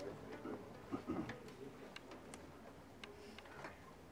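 Faint, scattered small clicks and ticks of acoustic instruments being handled and settled, in a quiet gap just before a song begins.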